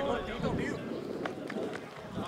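Men's voices calling out on a football pitch, loudest in the first half second, with a few faint sharp clicks in between.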